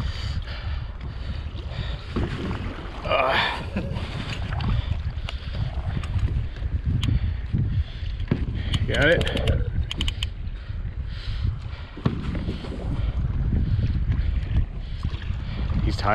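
Steady low rumble of wind on the microphone and water around the kayak, with a short spoken word or call about three seconds in and again about nine seconds in.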